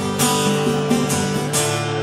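Live acoustic guitar strummed in a steady rhythm, with hand-played conga drums, in an instrumental gap between sung lines.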